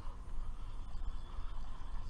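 Uneven low rumble of wind on an action-camera microphone aboard a kayak on open water.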